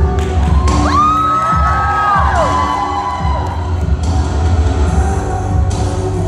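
Dance music with a heavy bass beat, with an audience cheering and whooping about a second in.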